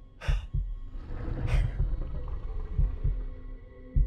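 Heartbeat sound effect: low paired thumps, lub-dub, coming slowly and getting slower, over a sustained low music drone.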